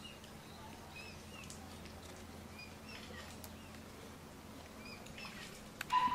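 Mute swan cygnet peeping: short, high chirps repeated irregularly over a faint outdoor background. A sharper, louder sound cuts in right at the end.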